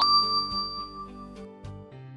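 Cartoon magic-wand sound effect: a bright chime ding that rings out and fades over about a second, with soft background music underneath.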